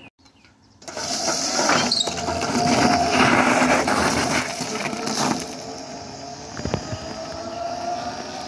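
Electric bike with a 3 kW Cromotor rear hub motor pulling away hard on loose gravel. About a second in, a loud rush of crunching, scattering gravel from the rear tyre begins, with a steady whine from the motor. It fades over the last few seconds as the bike rides off.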